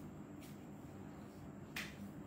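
Quiet room tone with one short, sharp click near the end and a fainter brief hiss about half a second in.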